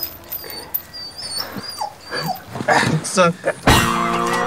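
A pug whimpering: a few thin, high-pitched wavering whines. Near the end, a person laughs.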